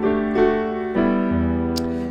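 Digital piano playing a D chord whose top F-sharp steps up to G (a D suspended fourth) and back down, the chords ringing on with a few fresh note attacks.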